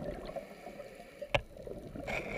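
Faint, muffled underwater noise with one sharp click a little past halfway.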